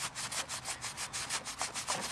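Paper towel damp with rubbing alcohol scrubbed back and forth over a hardened tar stain on a printed sack, in quick, even scratchy strokes about six a second.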